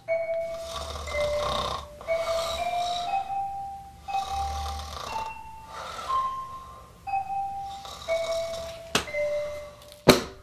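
A sleeping person snoring, two long snores about three seconds apart, over a slow, soft melody of single clear sustained notes. A sharp click comes near the end.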